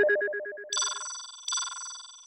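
Short electronic jingle: a rapid warbling trill for about the first second, then two bright bell-like chimes about three-quarters of a second apart, each ringing out and fading.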